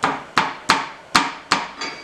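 Six sharp metal-on-metal knocks, each with a short ring, coming roughly three a second: a long wrench or bar being worked against the tool post of a metal shaper.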